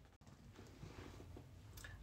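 Near silence: faint room tone across an edit cut.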